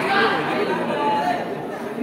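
Chatter of several overlapping voices, with no single clear speaker.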